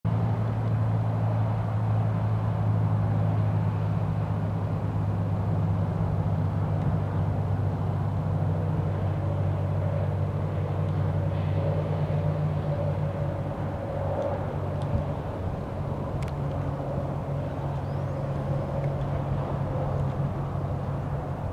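Steady highway traffic: a continuous low hum of car and truck engines and tyres, easing a little in the second half. A single short click about three quarters of the way through.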